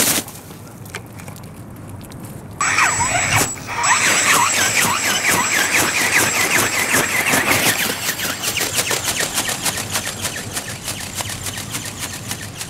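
Electric motor and gear drive of a large radio-controlled dragon ornithopter starting up about two and a half seconds in. It gives a high steady whine with a squealing gear sound and a rapid, regular clatter of the flapping wings, running on as it takes off and flies low.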